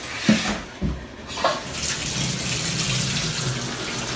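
A few knocks in the first second and a half, then a bathtub spout running steadily as it fills a plastic jug with water.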